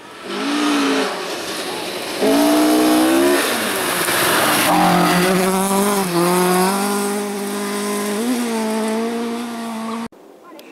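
Mk2 Ford Escort rally car's engine revving hard, its pitch rising and dropping with gear changes, with a rush of gravel and tyre noise about four seconds in as the car slides through a gravel corner, then steadier high revs.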